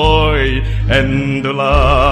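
A man singing solo with a wide, even vibrato: a held note that ends about half a second in, then a new note from about a second in, over low sustained bass notes of accompaniment.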